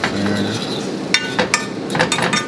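A cooking utensil clinking and scraping against a pan while an egg is scrambled, with a few sharp clinks in the second half.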